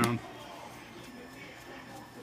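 Faint, low sounds of a small screwdriver turning a captive screw into the plastic bottom panel of an HP EliteBook 8440p laptop, just after a man finishes a word.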